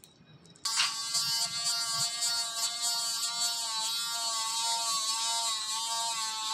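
A small electric dental handpiece starts abruptly less than a second in and runs with a steady, high buzzing whine.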